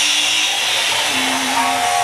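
Recorded steam-locomotive effects from a model-railway sound app, played through a small Bluetooth speaker. A steam blast hisses at the start and fades over about a second, then a steam whistle comes in near the end.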